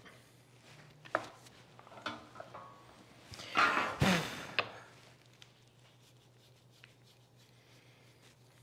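Wooden parts and tools being handled on a workbench: a few faint clicks, then a brief scraping rub and a sharp knock about four seconds in, over a low steady hum.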